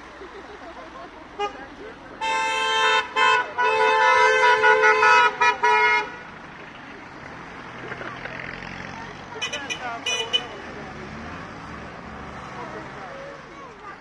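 A vehicle horn honking in a run of blasts with short breaks, starting about two seconds in and lasting some four seconds. Later a passing vehicle's engine is heard running, with a few short, higher-pitched toots near ten seconds.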